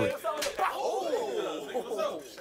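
A single open-hand slap to the face, one sharp smack about half a second in, followed by men's voices.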